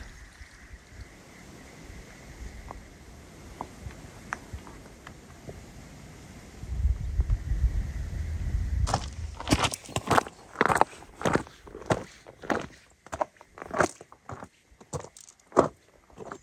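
Footsteps on a rocky gravel trail, crunching at about two steps a second through the second half. Before that there is faint outdoor quiet, with a low rumble just before the steps begin.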